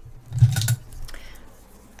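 Soft handling noise as a hand reaches across the work table: a brief low thump about half a second in, then faint rustling.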